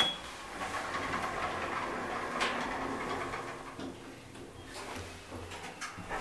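Thyssenkrupp Evolution machine-room-less traction elevator: a short beep as a car button is pressed, then a steady rush of the car doors closing and the car setting off upward, with a faint low hum a few seconds later.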